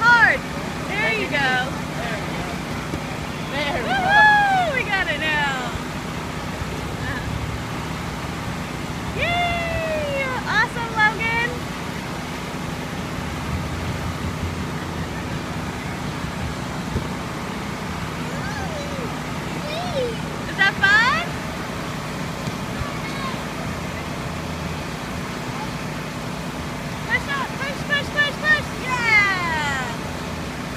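Steady low motor hum, with high-pitched voices calling out over it every several seconds, their pitch sliding up and down.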